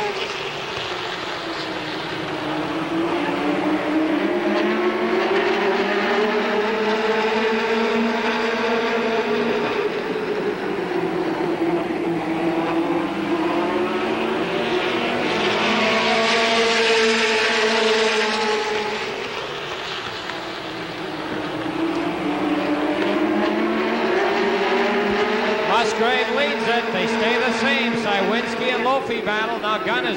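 A pack of late model stock cars racing around a short oval, their V8 engines running together. Their pitch and loudness rise and fall in long swells every nine or ten seconds as the cars accelerate down the straights and lift for the turns.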